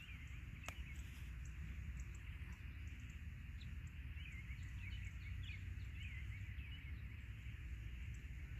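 Faint outdoor ambience: a low steady rumble on the microphone with small birds chirping, the chirps coming in a quick run from about halfway through.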